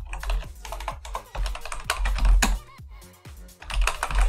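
Typing on a computer keyboard: a fast run of keystroke clicks entering a terminal command, with a brief pause near the three-second mark. Background music with a low bass plays underneath.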